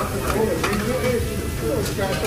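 Restaurant din of background voices over meat sizzling on a tabletop barbecue grill, with a few sharp clicks of metal tongs against dishes.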